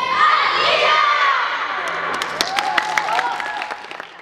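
A huddled women's futsal team shouting a cheer together in high voices, followed from about halfway through by a scatter of sharp claps as the shout dies away.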